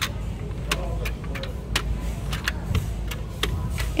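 Glass nail polish bottles clinking as they are picked up and set down among others on a store shelf: a dozen or so sharp, irregular clicks over a steady low hum.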